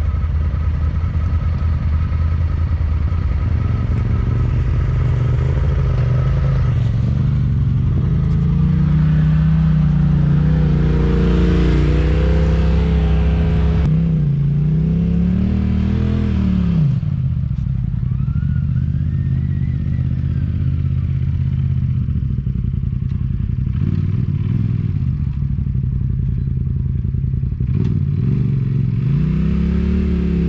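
Side-by-side UTV engine working on a steep dirt hill climb: a steady, loud engine drone with the revs rising and falling in the middle and climbing again near the end.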